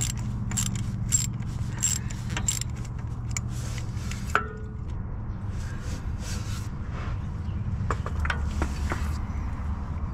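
Quarter-inch drive ratchet clicking in short strokes, about one every half second for the first four seconds and again later, as it backs out the small bolts holding the crankshaft position sensor on a Land Rover V8. A brief squeak comes a little past four seconds, and a steady low hum runs underneath.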